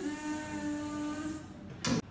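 A steady buzzing tone comes in suddenly and holds for about a second and a half, followed by a short sharp knock just before the end.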